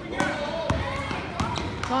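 Basketball dribbled on a hardwood gym floor: about four bounces, with spectators' voices over it and a shout of "Go" near the end.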